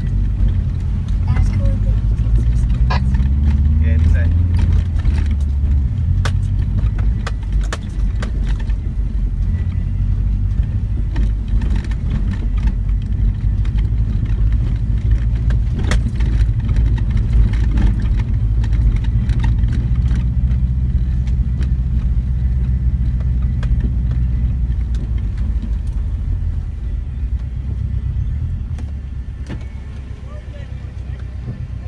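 Inside the cabin of a 2004 Subaru Forester driving over a rough dirt track: the flat-four engine drones under load, its pitch rising a couple of seconds in, while the body and loose items in the car rattle and knock over the bumps. The sound eases off near the end as the car slows.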